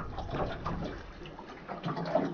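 Water splashing and lapping against a small boat's hull, an irregular wash with faint short ticks.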